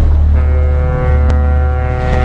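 A container ship's horn sounding one long, steady blast that starts about half a second in, over a deep, steady rumble.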